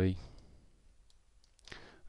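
A man's voice trailing off at the end of a word, then a quiet pause with faint clicks, and a short intake of breath near the end.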